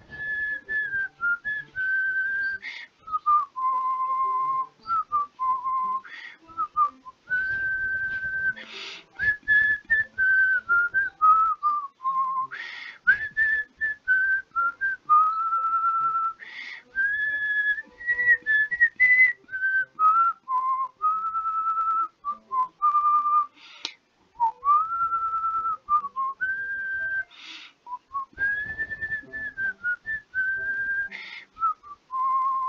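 A person whistling a slow tune, one clear note at a time, held notes stepping up and down, with short breaths between phrases.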